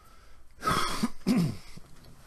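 A man clearing his throat twice in quick succession, the second time ending with a short falling vocal sound.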